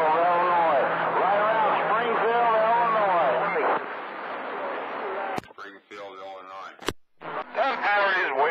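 Voices of distant CB stations received over skip on channel 28: thin, narrow-band AM radio speech, hard to make out. About five and a half seconds in the transmission drops with a sharp click. A weak, garbled signal follows, ended by a second click about a second and a half later, and then another voice comes in.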